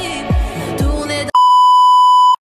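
Pop music with deep bass-drum hits about twice a second, cut off abruptly about a second and a third in by a loud, steady electronic bleep tone of the kind added in editing to censor or end a clip.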